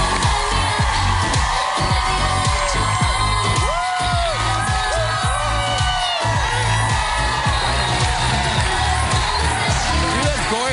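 Upbeat pop walk-on music with a steady beat, over a studio audience cheering and applauding.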